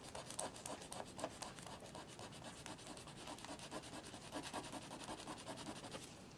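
Pen tip scratching over paper in many short, quick strokes as lines are drawn and traced, faint.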